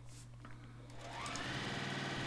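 Juki TL-2010 straight-stitch sewing machine starting up about a second in, its motor whine rising as it speeds up and then running steadily, stitching a long seam through quilting cotton strips.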